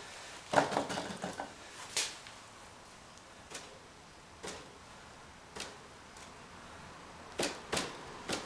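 A hand dabbing and tapping at a painting's surface: a handful of short sharp taps, irregularly spaced, two close together near the end, with faint rustling between them.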